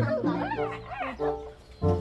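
Background music with held notes, over which a dog gives a few short, high, rising-and-falling calls in the first second.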